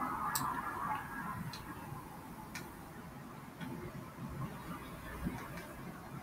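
A few faint, irregularly spaced clicks over low background noise, the clearest in the first three seconds.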